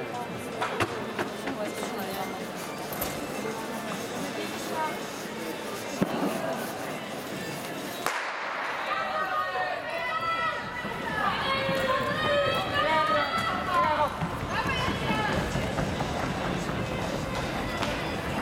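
Indoor arena ambience with voices, a single sharp crack about six seconds in that fits a starter's pistol firing for a sprint start, then a loud voice over the public address, echoing in the hall, from about eight seconds in.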